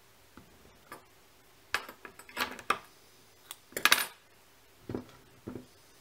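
Light clicks and clinks of small hard fly-tying tools being handled at the vise, in a few short clusters, loudest around the middle.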